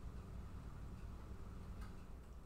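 Quiet room tone: a low, steady hum, with one faint click near the end.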